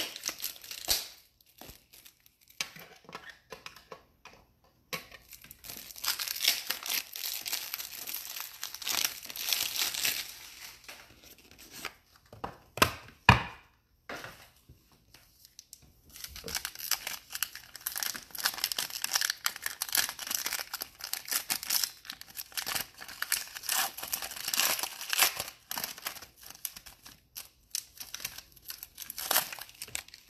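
Crinkling and tearing of plastic trading-card wrappers and sleeves as cards are handled, in stretches several seconds long with quieter gaps, and one sharp click about thirteen seconds in.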